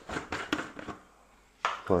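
A plastic scoop scraping and knocking inside a tub of protein powder: a quick run of four or five short scrapes in the first second.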